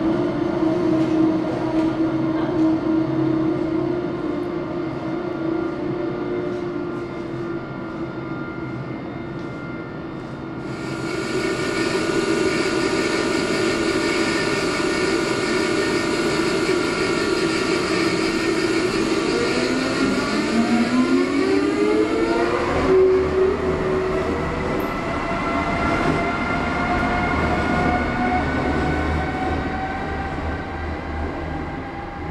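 Amtrak trains on an electrified line. First a passenger train runs beneath the overpass with a steady hum. Then a Siemens ACS-64 electric locomotive's traction motors whine in several tones that rise together in pitch as it gathers speed, followed by a deeper hum with slowly rising whine.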